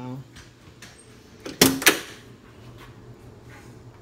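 Jeep Wrangler YJ driver's door slammed shut, two sharp hits about a quarter second apart as it closes and the latch catches, about one and a half seconds in. The door has been bent to fit and is tight, so it has to be slammed to latch.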